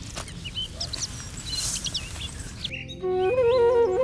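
Small birds chirping over a faint outdoor hush. A little under three seconds in, background music starts abruptly with held melodic notes.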